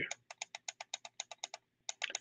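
Rapid run of light clicks at a computer, about eight a second, with a short break just before the end.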